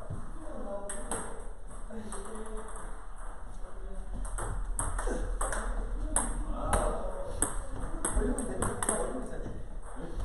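Table tennis rally: a ball clicking off the bats and bouncing on the table in a quick back-and-forth of sharp pocks, starting a few seconds in and running until near the end.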